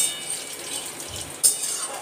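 Metal spatula scraping against a stainless-steel kadai as grains are stir-fried over a gas flame, with a steady sizzle underneath. There are two sharp scrapes, one at the start and one about one and a half seconds in.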